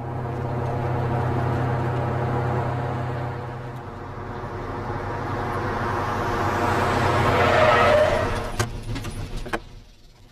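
Old military truck engine running as the truck drives up, growing louder toward its loudest point about eight seconds in. The engine then falls away, with a few short clicks and knocks near the end.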